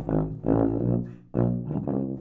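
Eastman EPH495 BBb sousaphone played in its low register: three sustained low brass notes with brief breaks between them.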